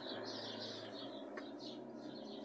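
Small birds chirping in a quick, continuous run of short, high calls, with a faint steady low hum underneath.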